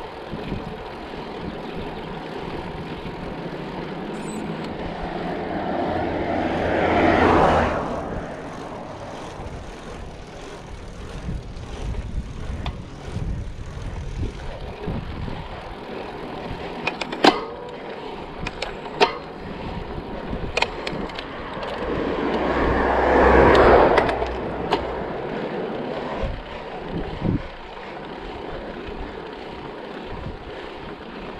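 Road bike rolling on asphalt, with steady wind and tyre noise on the rider's action camera. Twice a motor vehicle comes up, swells in loudness and passes, about seven seconds in and again about two-thirds of the way through. A few sharp clicks come in between.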